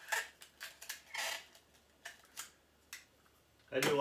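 Razor-blade box cutter slicing into packaging: a few short scraping cuts, the longest about a second in, with small clicks between them.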